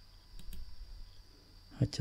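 A couple of faint computer mouse clicks in the first half second, opening a dialog box in the spreadsheet program.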